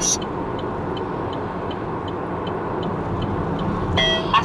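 Steady road and engine noise heard inside a car cruising on a multi-lane highway, with a faint, regular ticking about three times a second.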